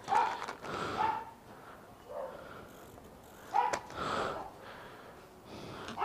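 A dog barking a few times in short barks, with a pause of a couple of seconds between the first pair and the last.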